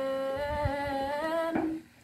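A woman singing one long held note of a Dao folk song, the pitch lifting slightly just before it stops near the end.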